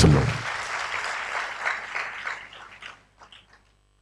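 Congregation applauding, dying away over about three seconds.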